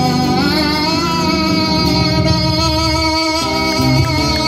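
A live Afro-Peruvian band playing a tondero: guitars and bass guitar over hand percussion, between the singer's lines.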